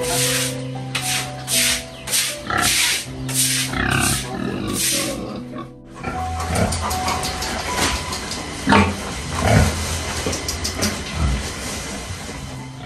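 Background music with sustained notes. Over it, a stiff broom scrubbing a wet concrete pen floor in quick strokes, about two or three a second; after a cut about six seconds in, pigs grunting as they eat at a trough, the loudest grunts near the middle.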